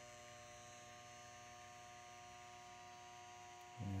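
Faint, steady electrical hum made of several fixed tones, unchanging throughout.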